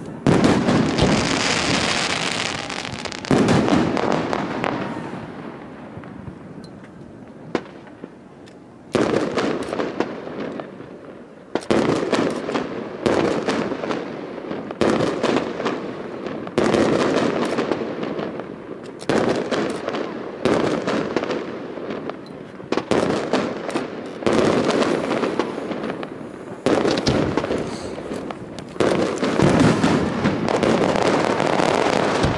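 Aerial firework shells bursting one after another, each a sudden bang that fades away. A quieter lull comes about five seconds in, then the bursts return every second or two.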